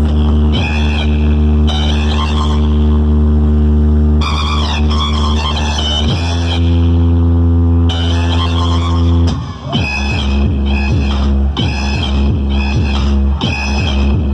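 Electronic dance music played very loud through the Chumbo Grosso truck-mounted speaker wall, a car-audio paredão built by Atrasom. It holds long, heavy bass notes for about nine seconds, then drops into a pounding beat of about two hits a second.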